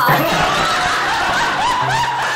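A woman laughing, in short, repeated laughs.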